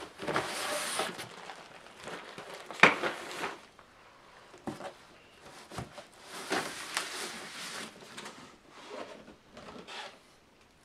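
Rustling and scraping of cardboard and plastic packaging as parts are pulled out of a box, in several stretches, with a sharp knock about three seconds in and a smaller one near the middle.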